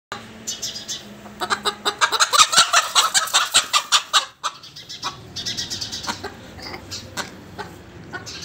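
Roosters clucking and squawking in quick bursts, loudest in the first half, then a few quieter, sparser clucks.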